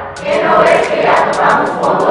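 Soundtrack music with massed choir voices swelling in waves, about twice in two seconds, over sharp repeated clicks.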